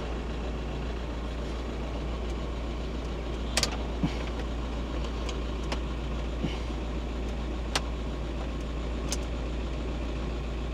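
VW T5 Transporter engine idling steadily, a low hum heard from inside the cab. A few light clicks sound over it as the inverter and its cigarette-lighter plug are handled.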